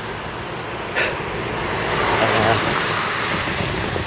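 A car passing on the road, its tyre and engine noise rising to a peak a couple of seconds in, then easing off.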